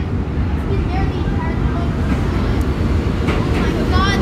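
Subway train pulling into the station: a low, steady rumble that slowly grows louder as it comes alongside the platform.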